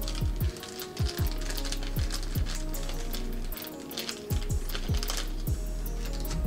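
Background music with a beat: deep bass kicks that drop in pitch, quick hi-hat ticks and a steady low bass note.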